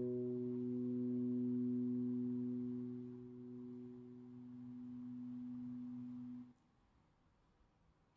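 A single low, sustained pedal steel guitar note, autosampled from a VST plugin and played back from an Akai MPC Live II. Its higher overtones die away first. The note cuts off suddenly about six and a half seconds in.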